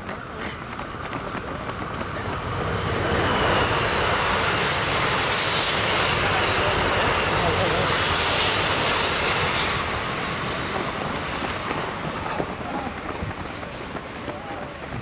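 A train passing on the railway beside the road: a rush of wheel and track noise that builds over a couple of seconds, stays loud for about six seconds with a steady high whine in its first part, then fades.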